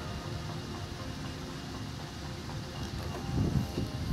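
Stick-welding arc on steel, a steady crackling hiss as the electrode burns against the burner's ring.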